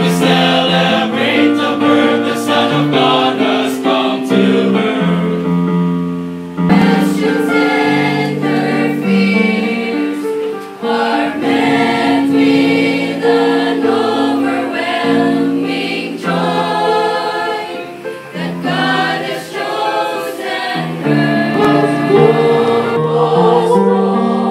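A choir singing a Christmas cantata number from score, men's voices first and then women's voices from about seven seconds in.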